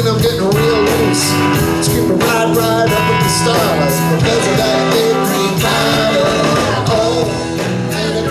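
Live blues-rock band playing: electric guitars, bass guitar and drum kit over a steady beat.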